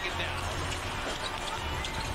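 Game broadcast audio from an NBA arena: a steady crowd din with a basketball being dribbled on the hardwood and a commentator's voice faintly over it.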